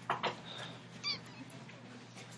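Faint rustling and light taps of a paper handout being moved on a desk, with a short high squeak about a second in.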